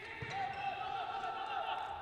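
Faint sounds of a volleyball rally in a large gym: a ball contact near the start, then a drawn-out wavering tone carried over the court's room noise.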